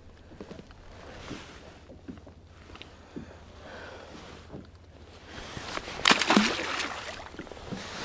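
Light knocks and rustles of a thornback ray being handled on a kayak, with low wind rumble, then a splash about six seconds in as the ray is dropped back into the sea.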